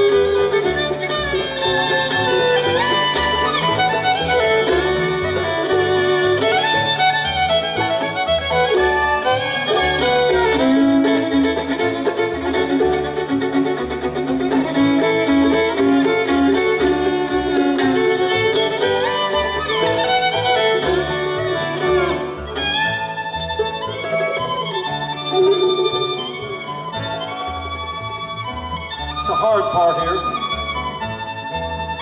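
Bluegrass band playing an up-tempo tune, with the fiddle leading over acoustic guitar, banjo and upright bass. The fiddle slides between notes in places.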